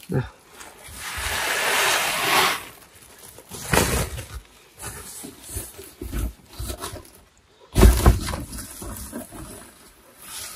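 Woven plastic sacks rustling and crinkling as they are shaken out and held open, with a long rush of rustling about a second in. Short handling rustles and knocks follow, and a louder rustle with a thud comes near the end.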